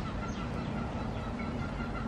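Chickens clucking faintly under a steady outdoor background, with a few faint short chirps.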